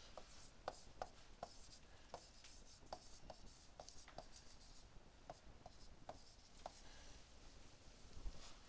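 Faint taps and scratches of a stylus writing on a tablet screen: irregular light clicks, about two a second.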